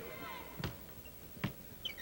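Basketball being dribbled on a hardwood arena court, two sharp bounces a little under a second apart, over a faint murmur of voices.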